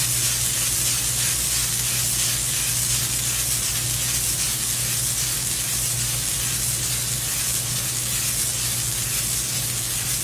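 Zetalase XLT fiber laser marking system etching lines into a black plate: a steady high hiss with a steady low hum underneath.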